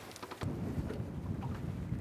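Wind gusting across the microphone: a low, steady rumble that sets in abruptly about half a second in, after a few faint clicks.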